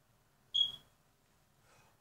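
A single brief high-pitched squeak about half a second in, against near silence.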